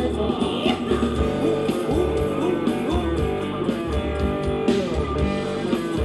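Live Thai ramwong band music with electric guitar over a steady bass beat.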